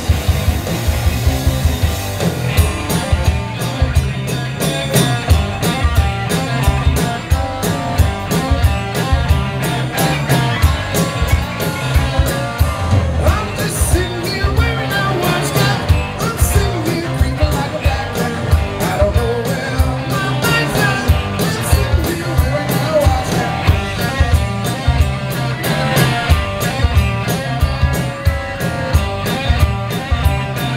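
Live rock band playing a song at full volume: distorted electric guitars and a driving drum kit beat, with a singer's voice over them.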